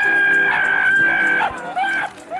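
A long, high-pitched held call that holds one steady pitch and breaks off about one and a half seconds in, followed by a couple of short falling calls, over faint background music.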